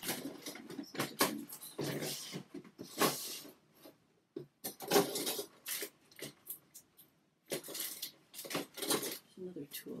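Small objects and art supplies being handled and rummaged through, with rustling and sharp clicks and clatters in three bursts separated by short pauses.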